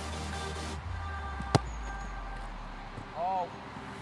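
A football kicked once, about one and a half seconds in: a single sharp strike of a boot on the ball.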